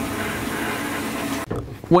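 Compressed-air blast nozzle hissing steadily as it blows unsintered print powder off a 3D-printed part inside a powder-cleaning cabinet, over a steady machine hum. It cuts off suddenly about one and a half seconds in.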